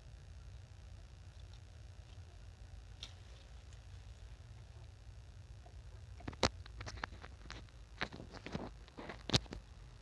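Hands handling ridged luffa fruits and vines: a handful of sharp clicks and snaps in the second half, two of them louder, over a low steady rumble.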